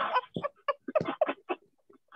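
A person laughing in short, quick pitched bursts that come less often and grow fainter toward the end, heard over a video call.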